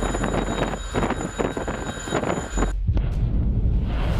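A dense, crackling rush of wind-like noise, cut off suddenly about three seconds in by a deep rumble: the roar of a missile launch from a destroyer's vertical launching system.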